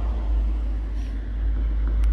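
A steady low rumble with no clear pitch, getting a little louder near the end.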